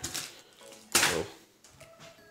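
Cardboard board-game box being picked up and handled: a brief rustle and knock about a second in, with faint background music.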